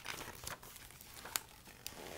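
Pages of a picture book being flipped and handled: a soft paper rustle with a few light clicks.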